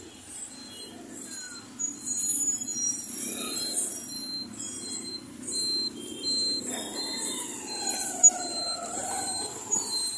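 Busy street noise of traffic and people, with a short high beep repeating about every half-second and wavering tones in the second half. Two sharp loud bangs come about eight seconds in.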